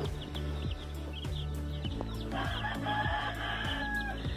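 A broody hen's drawn-out call, starting a little past two seconds in and lasting about a second and a half, over steady background music.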